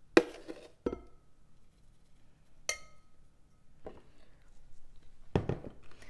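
A metal spoon knocking and clinking against a glass trifle dish and a blender jar of crushed Oreo crumbs, in five separate strikes; one clink about halfway through rings briefly like glass. Near the end a duller, heavier thump as the blender jar is set down on the counter.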